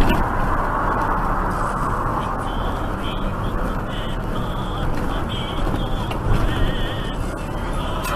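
Steady road and engine noise inside a truck's cab, picked up by the dashcam.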